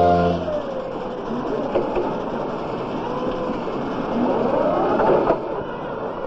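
Forklift running among the factory machinery: a motor whine that slowly rises and falls over a steady mechanical din, with a few knocks about five seconds in.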